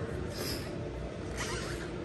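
Quiet room tone with a short, soft hiss about half a second in.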